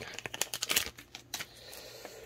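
Plastic card-pack packaging crinkling and rustling as it is handled, a quick run of clicks and rustles that dies away about a second and a half in, leaving a faint hiss.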